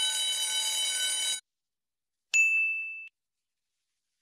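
Countdown-timer sound effect as the timer hits zero: a steady buzzing alarm tone lasting about a second and a half. About a second later comes a single bright ding that rings out briefly.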